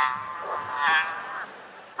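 A man's drawn-out, strained, croaking vocal sound imitating a demon as it runs, swelling about a second in and breaking off halfway through.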